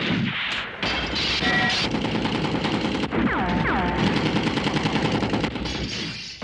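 Movie battle soundtrack of dense, rapid rifle and machine-gun fire, with two short falling whines a little after three seconds in.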